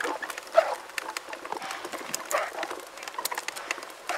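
Plastic wheels of a child's push tricycle rolling over concrete paving slabs, making an irregular clatter of small clicks and rattles.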